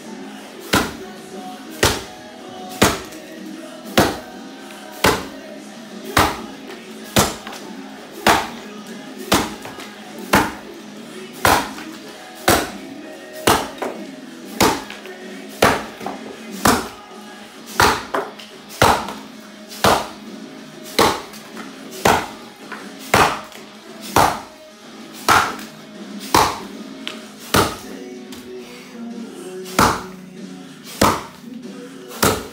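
Axe chopping into a white oak log in an underhand chop, the chopper standing on the log. Hard, sharp strikes come steadily, about one a second.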